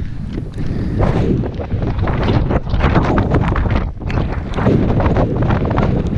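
Strong wind buffeting the camera's microphone: a loud, uneven rumbling noise that gusts up and down, easing briefly about four seconds in.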